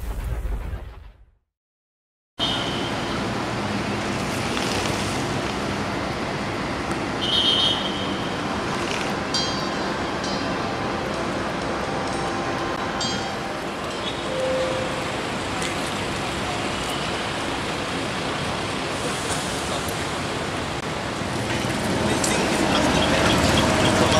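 The end of a logo sting, cut off about a second in, then a short silence. After that, steady roadside traffic hum, with a few faint passing tones.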